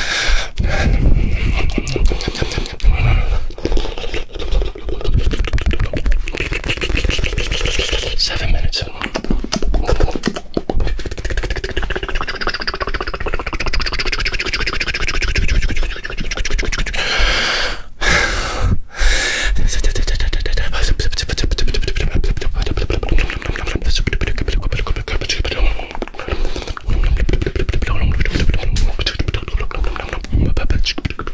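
Fast, aggressive ASMR mouth sounds made right against the ear of a binaural microphone: rapid clicks, pops and smacks with a low rumble underneath and two brief breaks a little past halfway.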